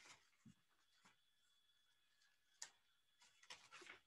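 Near silence: room tone with a few faint, short clicks, the sharpest about two and a half seconds in.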